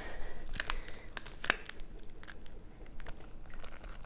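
Jackfruit rind cracking and tearing as gloved hands pry the fruit apart along a knife cut: a scatter of small crackles and snaps, most of them in the first half.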